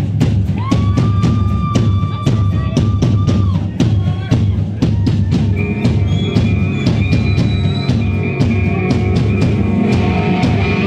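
Live rock band playing loud: a steady drum-kit beat with kick drum, under long held electric guitar notes, one lasting about three seconds near the start and a higher one from about halfway through.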